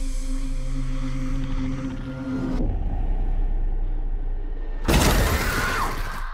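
Horror trailer score: a low droning rumble with held tones, then a loud sudden noisy hit about five seconds in with a falling whine inside it.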